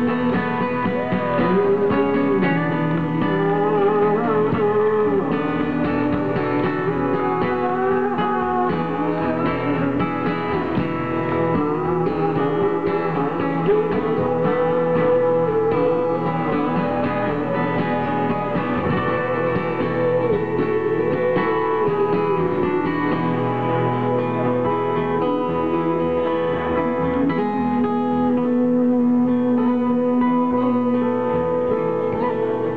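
Live acoustic guitar strumming with a wavering, sliding lead melody over a steady droning note, with no sung words.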